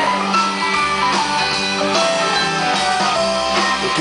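Live rock band playing an instrumental passage between sung lines: electric guitars carry the tune over bass, drums and keyboard.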